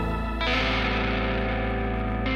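Instrumental progressive-rock passage: an effects-laden electric guitar strikes a new chord about half a second in and lets it ring over a steady low bass.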